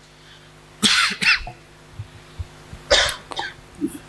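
A man coughing and clearing his throat twice, about a second in and again about three seconds in, picked up close on the microphone as loud as the speech around it.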